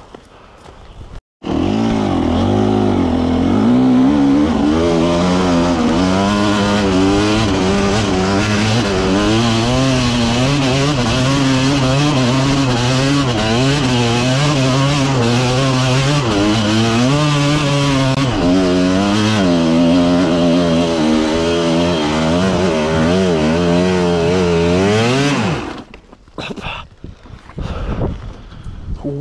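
Enduro dirt bike engine running under constantly worked throttle, its pitch rising and falling every second or so. It starts suddenly about a second and a half in and cuts off suddenly near the end.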